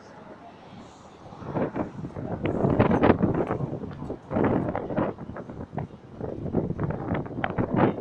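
Wind buffeting the microphone in irregular loud gusts, starting about a second and a half in.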